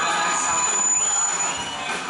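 Stage-show music with an audience cheering and shouting over it; the sound eases slightly near the end.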